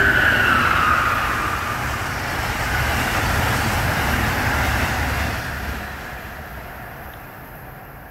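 Amtrak Northeast Regional train passing: a steady rush of wheels on rail with a brief high whine that drops slightly in the first second. It holds for about five seconds, then fades away as the train recedes.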